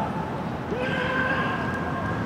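A person's long shout on the pitch, swooping up and then held level for just over a second in the second half, over steady outdoor background noise.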